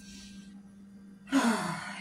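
A woman's faint breathy exhale, then about a second and a half in a loud, breathy voiced sigh.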